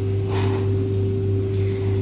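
Green Robusta coffee beans rustle briefly as a hand scoops into the pile, about a third of a second in, with a fainter rustle near the end. A steady low machine hum runs underneath and is the loudest sound.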